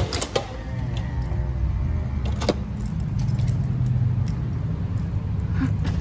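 A door latch clicks and a door creaks as it swings, followed by a steady low rumble of traffic with scattered light clicks.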